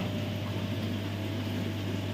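Steady low electrical hum of aquarium pumps and filtration, with an even background hiss.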